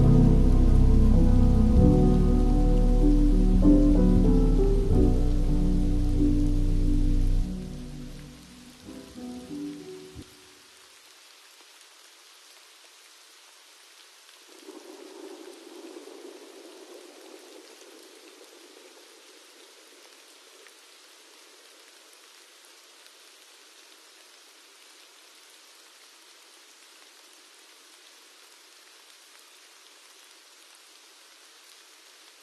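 The last bars of a slowed, reverb-heavy pop song end about eight seconds in and die away by ten seconds, leaving a steady, faint rain sound. The rain swells briefly a few seconds later, then settles again.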